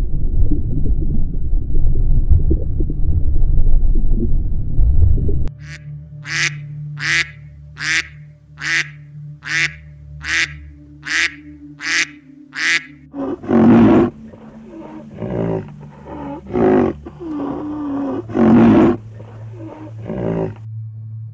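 A low, dense rumble for about five seconds, then a mallard quacking in a steady series of about nine calls. Near the end come several louder, lower animal calls.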